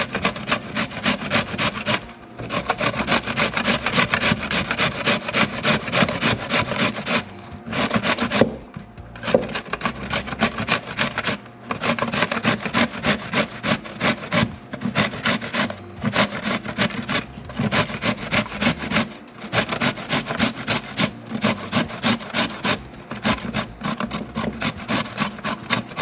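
Zucchini (calabacita) being grated on a stainless steel box grater: fast, even rasping strokes, about three a second, with a few brief pauses.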